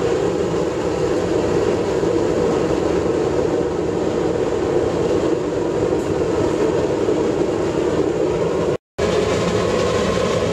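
Home-built waste oil burner, a fire extinguisher bottle fed with air by a jumping-castle blower, running with a steady rushing flame and blower noise. The blower intake is partly blocked, so it is not at full output. The sound breaks off for a moment about nine seconds in.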